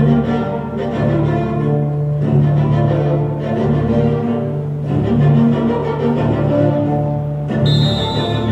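Recorded music led by low bowed strings, with long held notes that change every second or two. Near the end the music shifts and higher tones enter.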